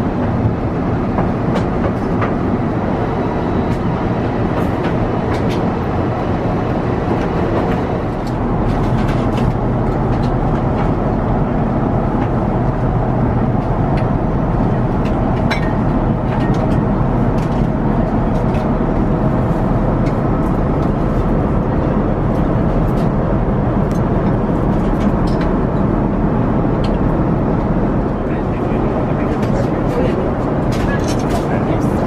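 Airbus A350 cabin noise in flight: a steady rush of airflow and engine hum, with occasional light clicks.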